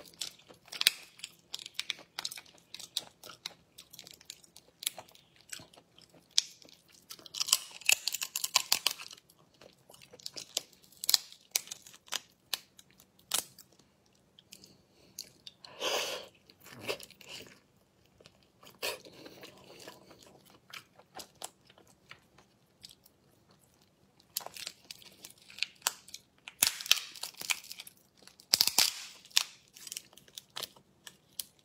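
Crackling and snapping of langoustine shells being cracked and peeled apart by hand, close to the microphone, mixed with biting and chewing of the meat. The loudest bursts of crackle come in clusters, about a quarter of the way in, around the middle, and over the last few seconds.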